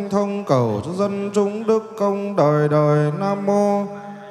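Vietnamese Buddhist liturgical chanting: a voice intoning a melodic chant in long held notes, sliding between pitches, with short breaks for breath.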